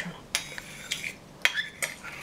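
Metal spoon stirring through rice pudding and clinking against the dish, with several sharp clinks about half a second apart.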